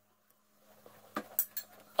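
Faint eating sounds as a big spoonful of cereal soaked in Sprite goes into the mouth, with two small clicks a little past one second in.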